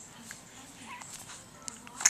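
A young baby's faint, soft coos: two short quiet sounds in the first half, with a small click near the end.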